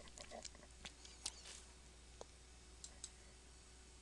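Near silence: room tone with a low hum and a few faint, scattered computer-mouse clicks.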